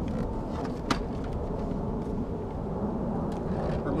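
Steady low rumble of wind buffeting the microphone, with a single sharp click about a second in as a bungee cord is unhooked from the stacked buckets.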